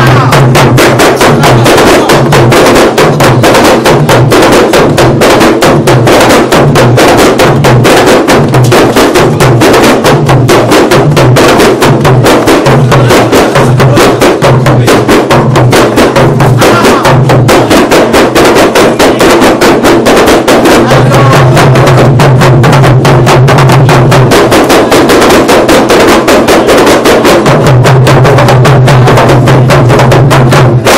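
A kompang ensemble playing: many hand-held frame drums struck by hand in a fast, dense interlocking rhythm, loud and continuous. Under the strikes is a low throb that pulses steadily for the first half and is held in longer stretches later on.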